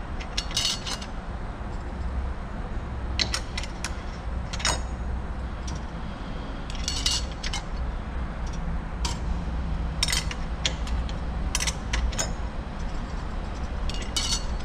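Steel clutch plates and friction discs clinking as they are set one at a time into the overdrive clutch pack of a Chrysler 62TE transmission's input drum: a string of scattered light metal clicks over a steady low hum.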